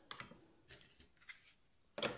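Faint, scattered light clicks and taps as a laptop trackpad circuit board is laid into a plastic tub of acetone among other boards, with a sharper click at the very end.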